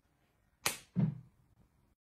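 A quick swish, then about a third of a second later a short low thud. Both are brief and die away fast.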